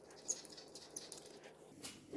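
Faint handling sounds of fingers working a plastic handlebar light bracket as its screw is tightened: a soft rustle with a small click about a third of a second in and a sharper click near the end.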